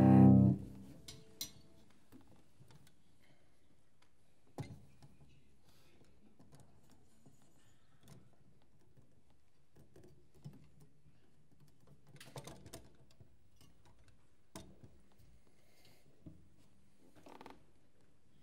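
A sustained cello note with piano dies away about half a second in. Then comes a pause in the playing: a quiet hall with scattered faint knocks and rustles, a few of them clustered near the middle and near the end.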